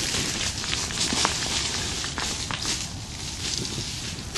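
Rustling and crackling of dry undergrowth and clothing as people shift about on foot, with a few sharp clicks.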